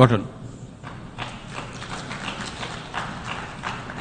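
Scattered applause from the assembly audience, a light patter of many claps starting about a second in.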